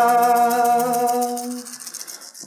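A voice singing an icaro holds one long hummed note that fades out near the end, over a rattle shaken continuously.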